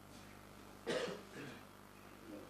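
A person coughs once, about a second in: a single short burst.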